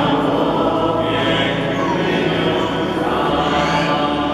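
A group of voices singing a slow hymn together, holding long sustained notes that ring out in a reverberant church.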